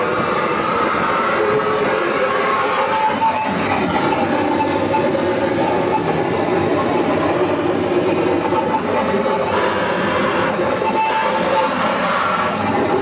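Live harsh noise music: a loud, unbroken wall of dense noise, with short high tones surfacing now and then.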